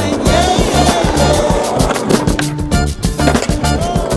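Skateboard wheels rolling on pavement, with background music that has a steady beat playing over it.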